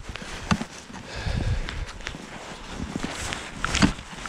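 Boots crunching through snow and dry brush in irregular footsteps, with a few sharp knocks, the loudest near the end.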